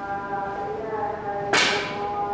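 A single sharp crack of a snooker shot about one and a half seconds in, the cue driving the cue ball. Behind it runs a steady background of held tones.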